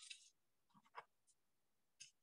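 Faint rustle of a paper sheet being turned over on a clipped writing pad, with a few light clicks about a second in.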